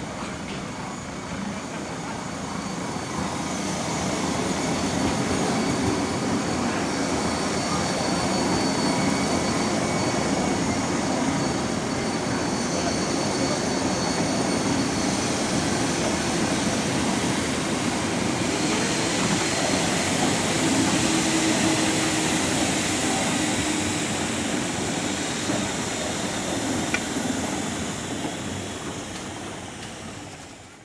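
Jungfraubahn electric rack-railway train running slowly past, a steady motor and running-gear noise that builds over the first few seconds and fades away near the end.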